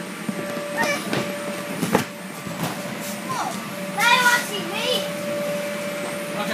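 Children playing in an inflatable bounce house: short shouts and cries, with a couple of thumps about one and two seconds in, over the steady hum of the bounce house's air blower.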